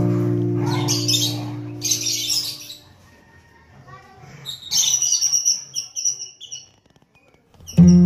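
Lovebirds chirping in short sharp calls, first about a second in and again in a longer run from about four and a half to six and a half seconds. Under the first calls an acoustic guitar chord rings on and fades, and the guitar music starts again just before the end.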